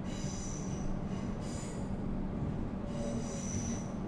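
Comeng electric suburban train running, heard from inside the carriage: a steady low rumble and hum of the ride, with a high-pitched wheel squeal that comes and goes three times.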